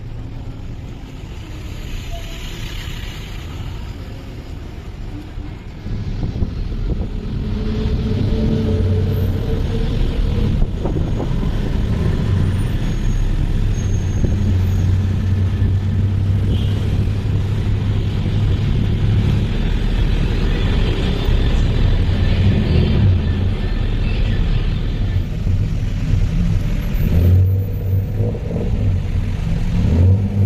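A motor vehicle's engine runs, with road and traffic noise, as heard from a moving vehicle. A deep hum swells and eases, and the whole gets louder about six seconds in.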